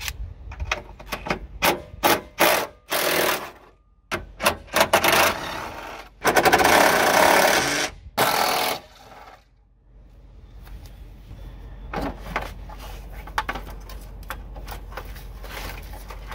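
Cordless impact driver with a 10 mm socket running in short bursts as it backs out the bolts holding a Jeep Cherokee XJ's header panel. A longer run comes about six seconds in, then one more short burst. Quieter clicks and knocks of metal being handled follow in the last seconds.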